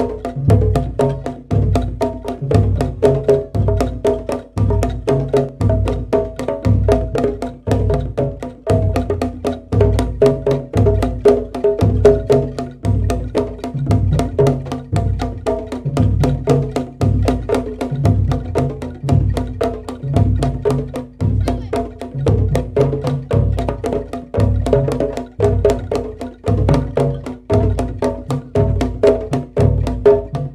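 Javanese gending pencak silat music: fast ketipung and kendang hand-drum strokes over a regular low beat about twice a second, with a suling bamboo-flute melody above a steady held low tone.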